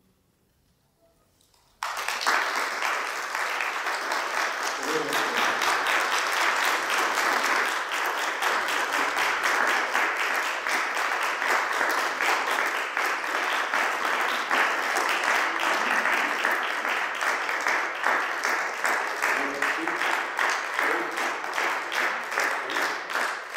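A moment of near silence, then about two seconds in an audience breaks into applause, clapping steadily throughout.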